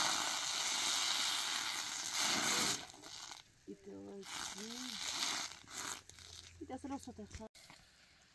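Batter sizzling on a hot domed iron griddle over a wood fire as it is spread thin; the sizzle stops about three seconds in, and voices follow.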